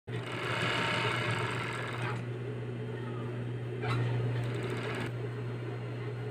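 Industrial overlock (serger) sewing machine stitching fast for about the first two seconds, then stopping, while a steady low motor hum carries on.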